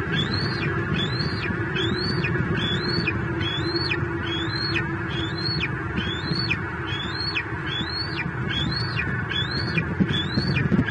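A bird calling one high whistled note over and over, about one and a half times a second, each note rising and then dropping sharply. Beneath it runs a steady rushing noise.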